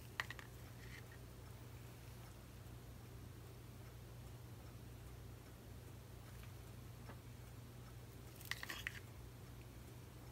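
Quiet room with a steady low hum and a few faint taps and clicks, once at the start and again about eight and a half seconds in, as a stir stick and small plastic cup of paint are handled.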